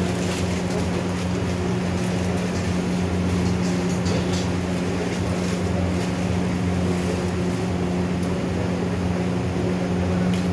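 Steady, unbroken low machine hum in a cooking area, with a light hiss of an egg frying on a hot flat-top griddle and a few faint ticks.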